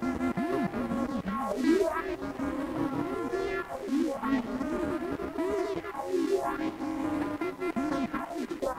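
Electric guitar played through effects: a steady stream of notes that swoop up and down in pitch over a sustained wash of ringing tones.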